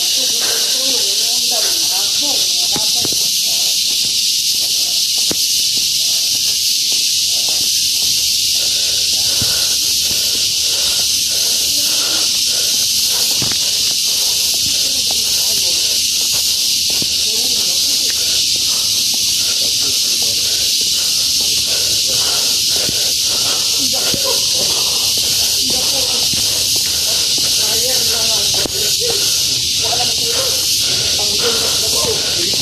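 Loud, steady high-pitched drone of a cicada chorus in tropical forest, unbroken throughout. Under it are faint regular footsteps on concrete steps, and some distant voices near the end.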